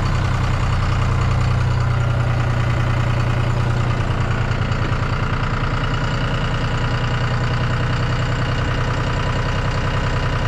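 John Deere loader tractor's diesel engine idling steadily, close by.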